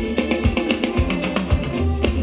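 A live Thai ramwong dance band playing: guitar and drum kit over a steady kick-drum beat, with no singing.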